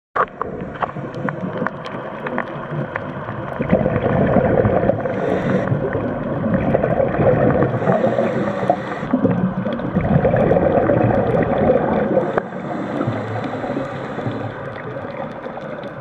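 Underwater sound on a diving camera: a rushing, gurgling water and bubble noise that swells through the middle stretch, with scattered sharp clicks throughout.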